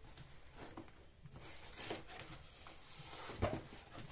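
Faint rustling of a plastic-wrapped parcel being handled and shifted, with a single knock about three and a half seconds in.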